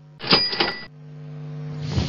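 Slide-animation sound effect: a short rattling burst with a bright, bell-like ring about a quarter second in. It is followed by a hiss that swells over the last second.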